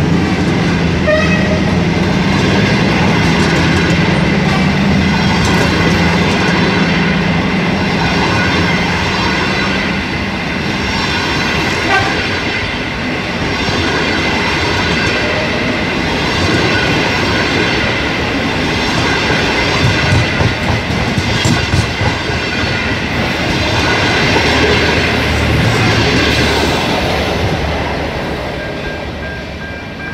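Chinese-built long-distance passenger train passing close by, its coaches rolling and clattering over the rail joints, with a steady high-pitched tone running through the noise. A low engine hum from the locomotive fades after the first few seconds, and the sound dies away near the end as the train goes by.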